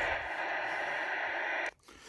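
Steady static hiss from an Audioline 340 CB radio's speaker, tuned to channel 19 with no station coming through; the hiss cuts off suddenly near the end.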